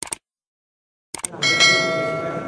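Subscribe-animation sound effect: a brief swish at the start, a couple of mouse clicks a little past a second in, then a bell chime that rings on with several steady tones and slowly fades.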